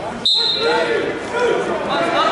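A referee's whistle: one short, high blast about a quarter second in, which restarts the wrestling from the referee's position. Overlapping shouting voices in a large echoing gym follow it.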